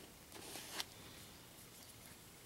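A plastic scraper card dragged across a metal nail-stamping plate to clear off excess polish: one short, faint scrape that ends in a light click just under a second in.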